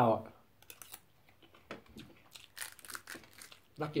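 Quiet, scattered small clicks and crackles of eating at a table, with sticky rice being handled in the fingers.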